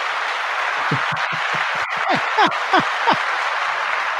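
Applause sound effect played back: an even wash of clapping that starts and stops abruptly, with a run of about eight quick downward-sliding tones in its middle.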